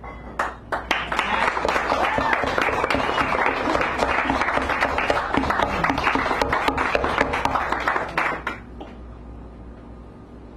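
Audience applauding: a few scattered claps at first, then a dense spell of clapping that stops about eight and a half seconds in.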